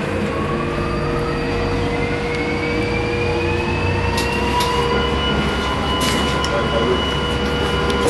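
Drilling rig machinery heard from inside the control cabin: a steady low hum with a held tone, and a whine that rises in pitch for about five seconds and then holds steady, like a motor spinning up. A few light clicks come partway through.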